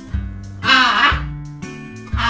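Background music, with one loud squawk from a blue-and-gold macaw about halfway through, lasting about half a second.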